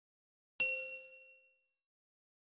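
A single bright bell-like ding, a notification-bell sound effect from a subscribe-button animation added in editing. It strikes about half a second in and rings out, fading over about a second, with no room sound around it.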